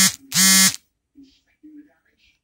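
Two loud buzzing tones, each about half a second long and steady in pitch, one right after the other; two faint short tones follow about a second later.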